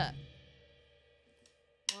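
Drum kit's last strokes ringing out and fading within about half a second, under a brief spoken 'uh', then near silence until a counted 'one' begins near the end.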